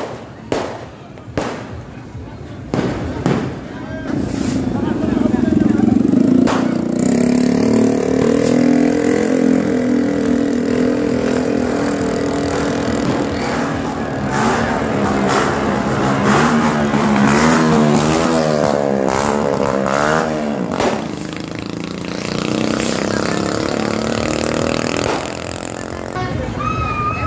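Firecrackers going off in several sharp bangs. Then a long, loud drone sets in, its pitch wavering rapidly up and down for a while before it fades.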